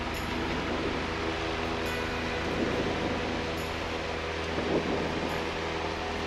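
Cessna 172's piston engine and propeller running steadily at high power for the takeoff roll, heard from inside the cabin as an even drone.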